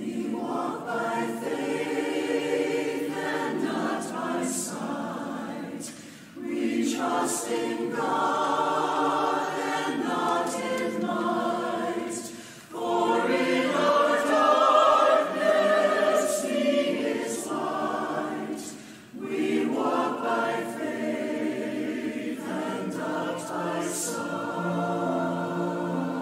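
Mixed choir of men's and women's voices singing an anthem with piano accompaniment, in phrases broken by short breaths about every six seconds.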